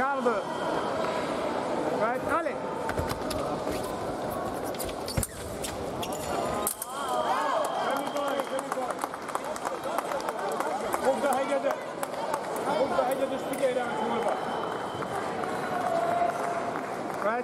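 Voices of people talking and calling out in a sports hall, with scattered sharp clicks.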